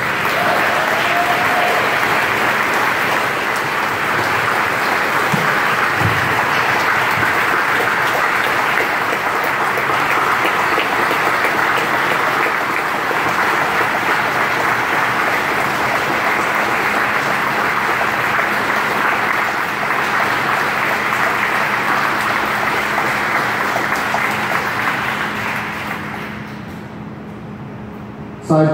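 Audience applauding steadily, fading away near the end, over a steady low hum.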